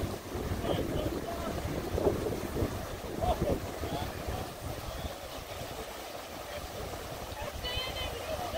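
River rapids rushing steadily, with wind buffeting the microphone.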